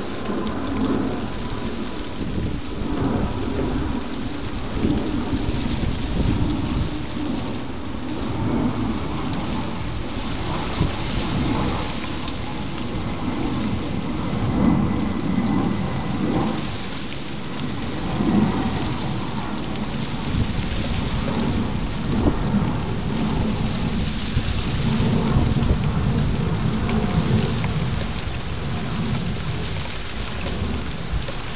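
Steady rain falling close to the microphone, a continuous hiss over a low rumble that swells and eases.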